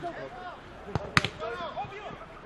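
A football struck twice in quick succession about a second in, the second strike the louder, with players' voices calling around it.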